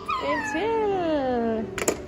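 A toddler's long wordless vocal sound, sliding steadily down in pitch from high to low over about a second and a half. It is followed near the end by a few light clicks.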